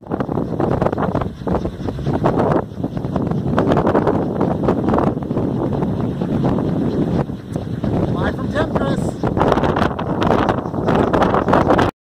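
Strong wind buffeting the microphone: a dense, loud rush of noise with gusty rises and dips, cutting off suddenly near the end.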